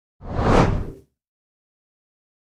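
Whoosh sound effect of a news bulletin's transition graphic: one swell of noise that rises and dies away within about a second.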